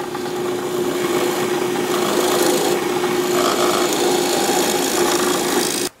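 Drill press running with a twist bit boring into a small carved wooden bird's head: a steady motor hum under the scrape of the bit cutting wood. The sound cuts off just before the end.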